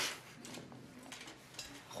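Quiet kitchen room tone: a faint, steady background hiss with a few light clicks.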